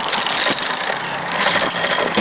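Loud, close rustling and scraping of a body-worn camera rubbing against clothing, climbing sling and rock as the climber moves, with scattered sharp clicks of gear and a low steady hum underneath.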